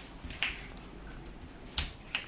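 Two sharp clicks: a weaker one about half a second in and a louder one near the end.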